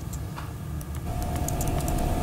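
Steady low hum and rumble, joined about a second in by a steady single-pitched whine, with faint scattered ticks.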